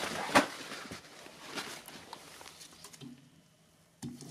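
Handling noise as a roll of kitchen paper is set down: a sharp knock about half a second in, then faint rustles and taps that die away to near silence near the end.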